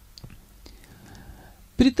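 A short pause in a man's speech through a microphone: low room tone with a few faint clicks and a soft breathy hiss. His voice comes back just before the end.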